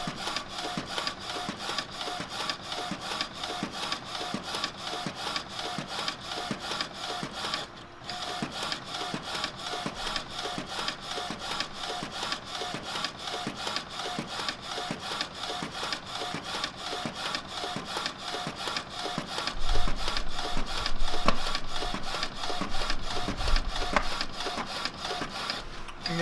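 Sawgrass SG800 sublimation inkjet printer printing a transfer sheet, its print head shuttling back and forth in a steady, even rhythm with a brief pause about eight seconds in. A low rumble joins in for the last several seconds.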